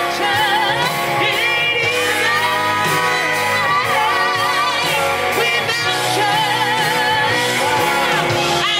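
Live band playing, with a woman singing long held notes with vibrato over electric guitar, bass, keyboard and drums.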